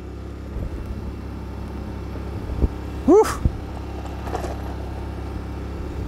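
Generator engine running steadily under the load of a 3.5 kW induction furnace, a low hum. About three seconds in, a short cry that rises then falls cuts through once.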